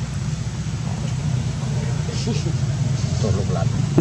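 A steady low motor-like rumble with faint voices behind it.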